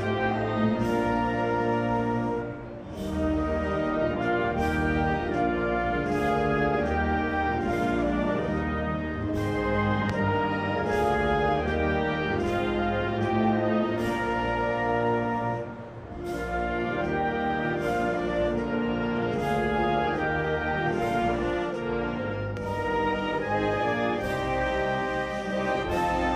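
A national anthem played by a full orchestra, with horns, trumpets and trombones leading. The music pauses briefly twice, a few seconds in and again at about the middle.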